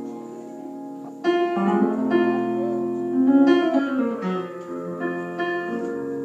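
Live instrumental jazz-style music: electric keyboard playing sustained chords, with a woodwind coming in loudly about a second in and holding long notes, one of them sliding down in pitch near the middle.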